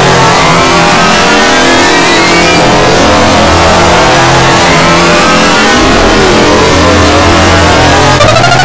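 Loud, heavily distorted and clipped music from an audio-effects edit, its pitch warped so that many tones slide up and down at once, rising in the first seconds and falling later on. The result is a dense cacophony.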